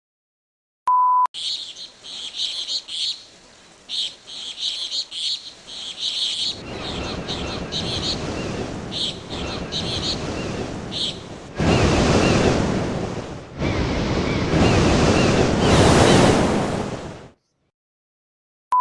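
A short, high, steady beep, then small birds chirping over ocean surf. The surf builds and comes in louder swells before cutting off suddenly near the end.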